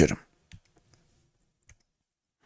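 The tail of a spoken word, then a few faint, sparse computer mouse clicks, about half a second in and again near the end, turning the page in a digital textbook program.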